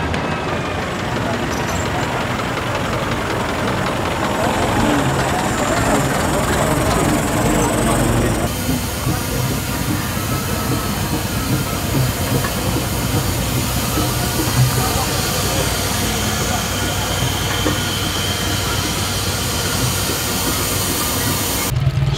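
Steam traction engine standing in steam, with a steady hiss. About eight seconds in, the sound changes abruptly to a steadier low hum under the hiss, with indistinct voices in the background.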